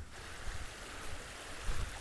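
A small beck (Fusedale Beck) running over stones, a steady rushing hiss of flowing water.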